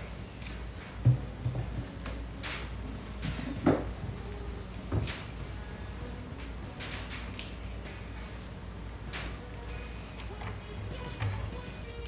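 Honey frames knocked and slid against the wooden hive super as they are put back into the box, sharp knocks every second or two over a low steady hum.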